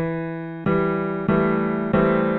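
Virtual piano of the Song One app: four notes tapped one after another about two-thirds of a second apart, E, then G, A and C, each ringing on under the sustain pedal so they stack into one chord.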